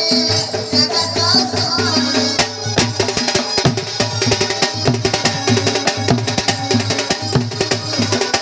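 Danda nacha folk dance music: drums and rattling percussion over a sustained low tone. The drumming grows denser and busier about two and a half seconds in.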